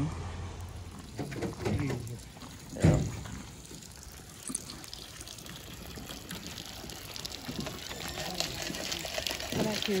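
Spring water pouring in several thin streams from iron pipe spouts and splashing onto the ground, growing louder over the second half. A single sharp thump comes about three seconds in.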